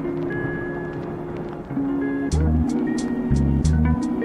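Background music: a plucked-string, guitar-like tune over held notes. Deep bass and a light ticking beat come in about halfway through.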